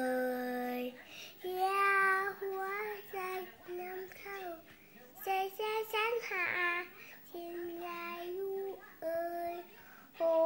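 A young girl singing a song into a toy microphone, in held, sung notes with short pauses between phrases.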